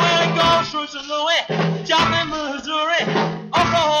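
Early-1960s British beat-group recording: a male lead vocal over electric guitars, bass and drums at a driving rhythm-and-blues tempo.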